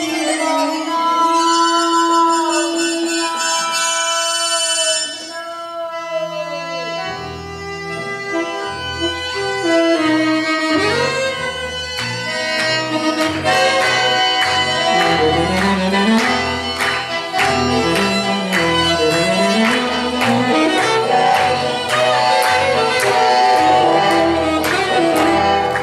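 Instrumental break by a small acoustic band: saxophone playing long held notes with vibrato over guitar. A low rhythmic accompaniment comes in about seven seconds in, and quick strummed chords drive the second half.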